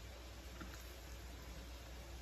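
Quiet room tone: a steady low hum and faint hiss, with only slight soft sounds of raw pork slices being turned over by hand on a plastic cutting board.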